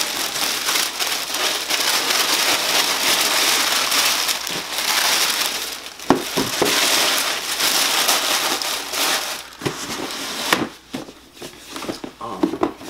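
Tissue wrapping paper crinkling and rustling, handled continuously as a sneaker is pulled out of it. It dies down about ten seconds in to a few soft knocks.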